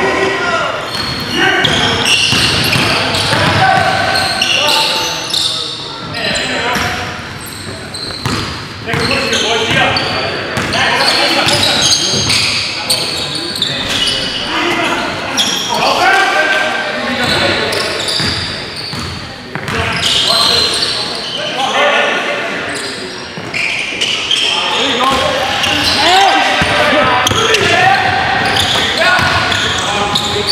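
Basketball bouncing on a hardwood gym floor during play, with players' voices calling out, all echoing in a large gym.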